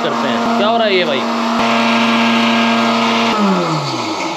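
Electric mixer grinder (mixie) running at a steady speed while grinding spices, then switched off a little over three seconds in, its motor pitch falling as it spins down.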